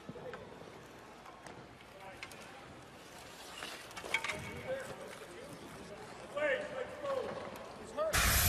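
Quiet hockey-rink ambience picked up by the broadcast microphones, with faint, distant voices of players and staff around the bench and a few light clicks.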